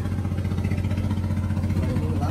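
Yanmar 6BH six-cylinder turbocharged marine diesel engine running steadily, a low, even hum with a fast regular pulse.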